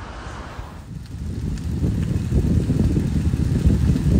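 Low, uneven rumble of wind buffeting a phone's microphone outdoors, swelling about a second in.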